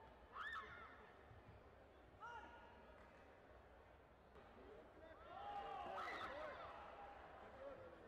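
Faint, distant shouting of voices in a sports hall during a taekwondo bout: short yells about half a second in and again around two seconds, then a run of overlapping shouts from about five to seven seconds.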